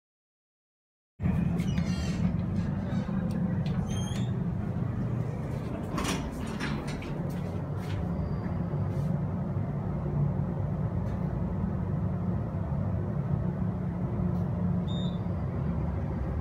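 After about a second of dead silence, a hydraulic elevator runs with a steady low hum of the car in motion, with a few faint clicks along the way.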